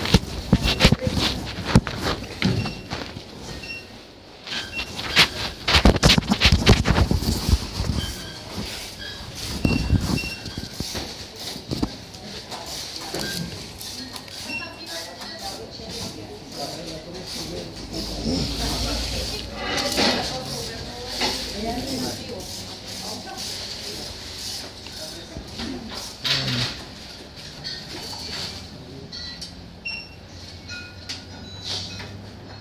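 Irregular knocks, rustles and clatter from a phone and plastic grocery bags being handled in a plastic shopping basket, busiest in the first several seconds, with indistinct voices in the background.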